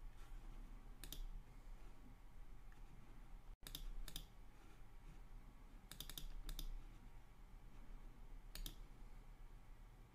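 Faint clicks of a computer mouse: a few scattered single clicks, with a quick run of three or four about six seconds in.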